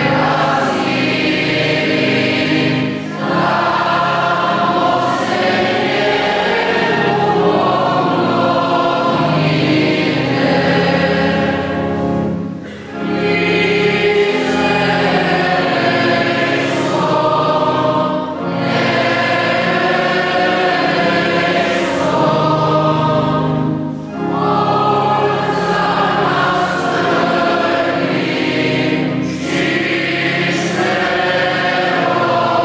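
Many voices singing a church hymn together in long phrases, with short pauses between lines, the clearest about twelve seconds in.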